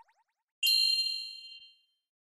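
A single bright, bell-like ding sound effect: struck once about half a second in, it rings on several high tones and fades away over about a second.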